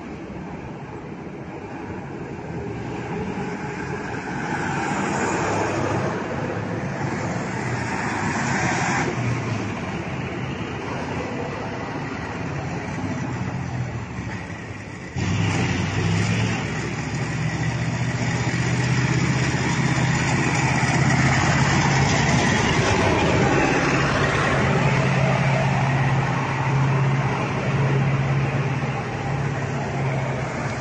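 Convoy of military trucks driving past, engines running and tyres on the road, growing louder as they approach. About halfway through the sound jumps suddenly louder and a close truck's engine hum dominates.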